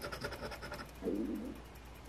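Coin scraping the coating off a scratch-off lottery ticket: a quick run of short, even scratching strokes that stops about a second in.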